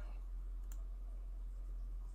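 A single faint computer mouse click about a third of the way in, over a steady low electrical hum.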